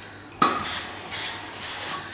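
A sharp clack about half a second in, then a steady hiss: a steam-generator iron being picked up off its rest and letting out steam onto the fabric.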